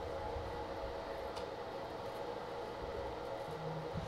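Steady room hum with several faint steady tones, and a single soft click about a second and a half in.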